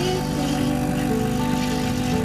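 Background music over the steady hum of an espresso machine's pump as a shot runs into a mug.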